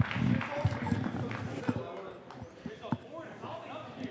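A few dull thuds of footsteps on the wrestling ring's canvas, the loudest near the three-second mark, over indistinct talk in the room.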